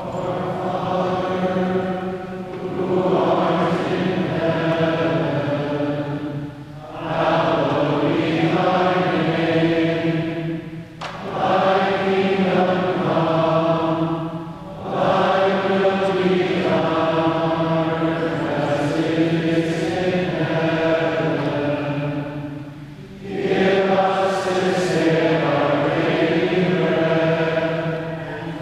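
A group of voices singing a slow liturgical chant in long sustained phrases, with short pauses for breath between phrases, carried by the reverberation of a large cathedral.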